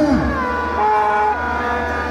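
Several long, steady tones at different pitches overlap, some bending at their ends, like horns or whistles held by many people at once.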